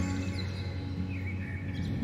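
Soft background music of sustained low notes, with a few faint bird chirps above it.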